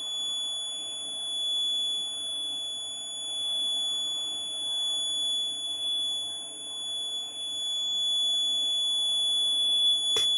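Piezo buzzer alarm on an accident-detection circuit board, sounding one steady high-pitched tone without a break. It signals that the board has detected a front accident.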